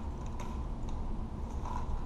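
Quiet handling of a Dart Zone Powerball Ballistics Ops pump-action ball blaster that has double-fed: a few faint plastic clicks and creaks over a low rumble.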